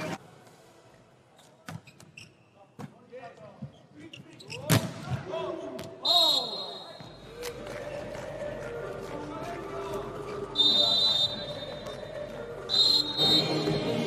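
Volleyball being played: a few light sharp taps, then a loud smack of the ball on a hit just before the midpoint, with sneakers squeaking on the court. A referee's whistle blows three short blasts, just after the midpoint, about three-quarters through and near the end, over a steady arena murmur.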